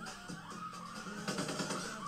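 Dark, sustained soundtrack music from a TV episode, held tones with a few faint gunshots about a second and a half in.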